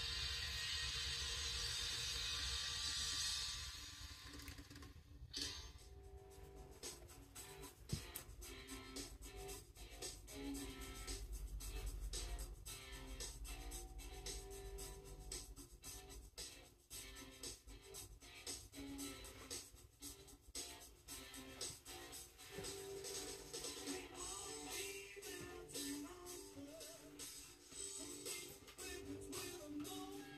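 Music played through a tactile exciter stuck to the back panel of a speaker cabinet, so the cabinet's wooden panel itself radiates it. It comes out faint and thin, and starts with a steady hiss for the first few seconds. This is a cabinet-resonance test, showing how much the panel sings when driven directly.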